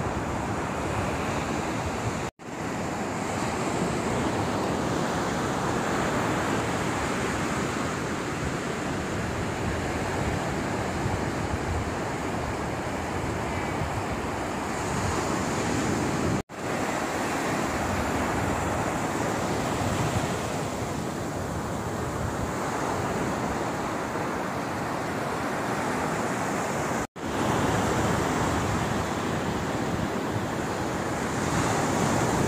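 Ocean surf breaking and washing up on a sandy beach, a steady rushing noise with wind on the microphone. It drops out abruptly three times for an instant, where the clips are cut.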